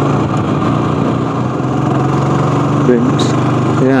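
Motorcycle engine running steadily at cruising speed on the open road, a constant even hum.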